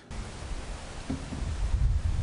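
Strong gusty wind buffeting the microphone in an uneven low rumble, with a hiss of wind through trees.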